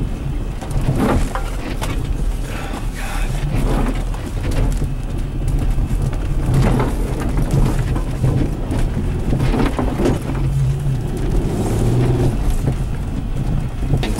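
Mercedes E320 4Matic wagon's V6 heard from inside the cabin while crawling over a rough snowy trail: a steady low engine drone. Irregular knocks and thuds come from the suspension and body over bumps.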